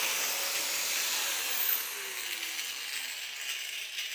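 Angle grinder with a thin cut-off disc cutting through the end of a steel shift-lever rod clamped in a vise: a steady, loud, hissing grind that eases a little about two seconds in.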